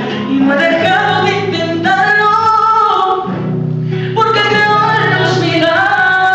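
A man singing into a microphone with long held notes, accompanying himself on a strummed acoustic guitar.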